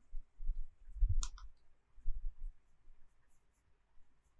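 Soft knocks and clicks of a stylus writing on a tablet, with one sharper click about a second in.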